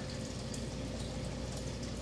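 Steady low background hiss with a faint constant hum: room tone, with no distinct event.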